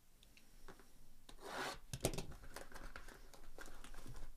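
Plastic shrink-wrap on a trading-card hobby box being scratched open and torn: irregular crinkling and crackling that starts faint and grows louder after about a second.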